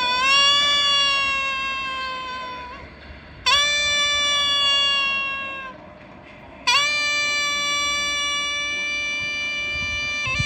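Double-reed horn with a flared brass bell playing three long held notes. Each note opens with a quick upward scoop in pitch. The first two fade away, and the third holds steady.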